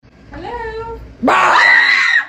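A voice, then a little over a second in a woman's loud, high-pitched scream held for about a second: a startled scream of fright.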